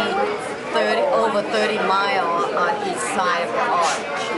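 A woman talking close to the microphone, with other people's voices chattering behind her.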